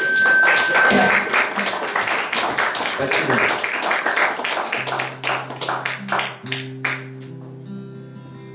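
Audience clapping, with a brief high steady tone in the first second. The clapping thins out as acoustic guitar notes start up again about five seconds in.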